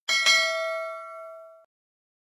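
Notification-bell 'ding' sound effect from a subscribe-button animation: a quick double strike followed by a bright bell tone that rings and fades, then cuts off suddenly after about a second and a half.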